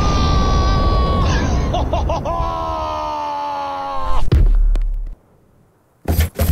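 Cartoon dynamite explosion, a loud deep rumble with a character's long high-pitched screams over it: one held scream, then a second longer one that falls slightly. It ends in a heavy thud about four seconds in.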